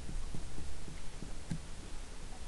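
Pen writing on paper laid on a desk, heard as a series of soft low taps, over a steady low electrical hum.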